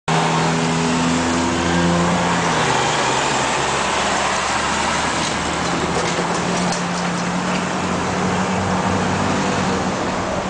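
Cars running in nearby traffic: a steady wash of engine and road noise, with a low engine drone holding one pitch through the second half.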